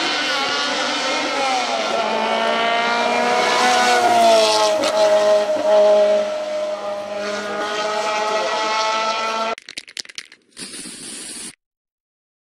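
Lotus Elise race car's engine at high revs as it passes at speed, loudest about four to six seconds in, its pitch climbing and then dropping and holding steady as it goes by. The sound cuts off abruptly near the end, followed by a few crackles and a short hiss.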